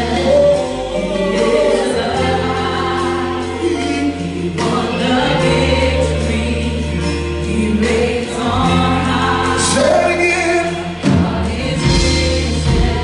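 Live gospel worship band with several singers: voices singing together over keyboard, guitars and a deep bass holding long notes that change every couple of seconds.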